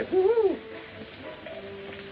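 A short pitched 'hoo' sound that rises and falls in the first half second, then faint held notes of the film's background music score.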